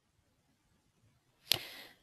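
Near silence, then a single sharp click about a second and a half in, followed by a short breathy hiss.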